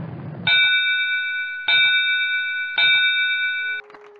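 The tail of a low explosion rumble, then a ring bell struck three times about a second apart. Each ring holds clear and steady until the next strike, and the last is cut off abruptly near the end.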